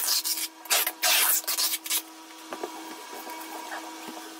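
Brown packing tape ripped off its roll onto a cardboard carton in three quick, loud pulls over the first two seconds, then quieter rustling and knocks as the taped box is handled, over a faint steady hum.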